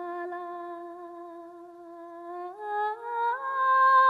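A single voice humming a slow wordless Tibetan melody with no accompaniment: one long held note, then two steps up in pitch with short glides to a higher, louder note near the end.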